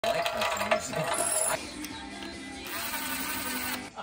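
Hand-cranked piston ring filer filing a piston ring's end gap, a metallic grinding with clicks for about the first second and a half, then voices and laughter.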